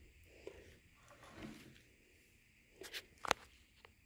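Quiet handling sounds: stems and leaves of a potted ZZ plant being moved by hand, with a few light clicks, the sharpest about three seconds in.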